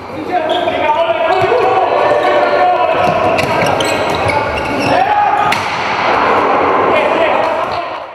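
Handball match in a sports hall: many voices shouting and cheering, with a few sharp thuds of the ball bouncing and striking during play.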